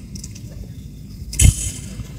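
Low, steady background noise in a pause between words, broken about one and a half seconds in by a single sharp knock with a smaller one just after.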